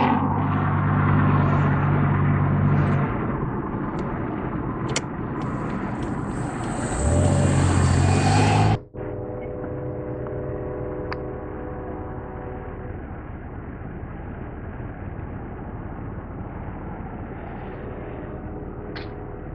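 Car engine hum and road noise heard from inside a moving car, cutting off abruptly about nine seconds in. After that comes quieter outdoor traffic noise with a faint steady hum of cars.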